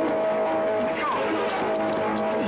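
Film soundtrack: a steady, droning held musical note runs under a brief gliding vocal sound about a second in.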